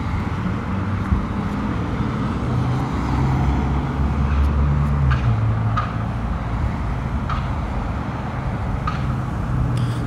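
A steady low rumble of a motor vehicle. Its hum steps up in pitch about three seconds in and drops back about two seconds later, with a few faint ticks over it.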